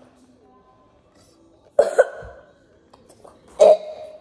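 A person coughing: a quick double cough about two seconds in and another loud cough near the end.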